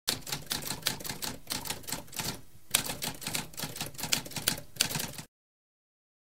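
Typewriter keys clacking in a rapid run of strokes, with a brief pause about halfway through, stopping abruptly a little after five seconds in.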